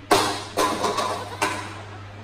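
A small hand-thrown, home-made toy spaceship hitting a wooden floor and clattering as it bounces and skids along: a sharp knock, the loudest, then four quicker knocks within about a second and a half, echoing in the room.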